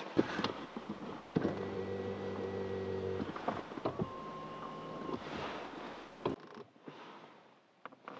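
A small electric motor in the vehicle whirs steadily for about two seconds, with a shorter higher whine a little later, over a steady hiss that cuts off suddenly near the end. A few light clicks and rustles come through as well.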